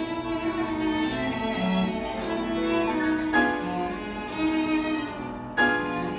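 Piano trio playing live: violin and cello holding bowed notes over piano. Strong accented chords strike about three and a half seconds in and again near the end.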